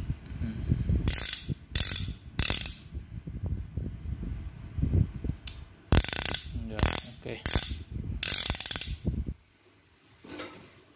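MCC 22×24 mm ratchet wrench worked back and forth by hand, its pawl clicking in short runs: three in the first few seconds and four more in the second half.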